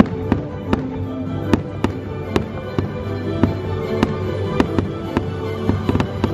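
Aerial fireworks shells bursting in quick, irregular succession, about two or three sharp bangs a second, over the show's music.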